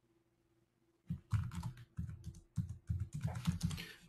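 Computer keyboard typing: a quick, uneven run of keystrokes that starts about a second in and keeps going.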